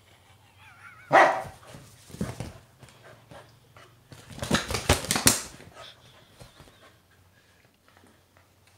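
Kelpie dog giving a loud bark about a second in, then a flurry of scuffling and thrashing around the middle as she shakes and tears at a stuffed toy.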